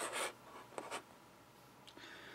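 Plastic Transformers Shockwave figure in jet mode being set down and slid on a tabletop: a short scraping rub, then a light click a little under a second in.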